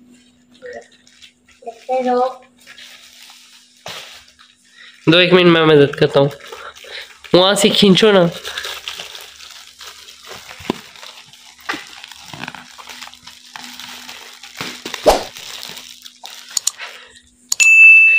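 Thin plastic courier bag crinkling and rustling as it is pulled and torn open by hand, with a voice twice early on. Near the end a short electronic ding chime.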